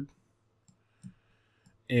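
Mostly near silence, broken by a faint single click and, about a second in, a short soft sound; speech ends just at the start and begins again near the end.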